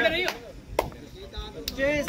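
Two sharp hand slaps about a second apart on a kabaddi court, with short shouts at the start and near the end.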